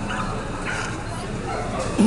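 A dog barking a few short times, over a background murmur of people's voices.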